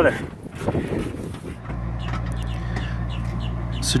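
A steady low mechanical hum sets in suddenly about one and a half seconds in and holds an even pitch.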